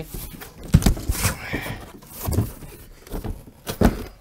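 A large cardboard box being opened by hand: flaps scraped, rustled and pulled back, with scattered knocks on the cardboard, the loudest just under a second in and near the end.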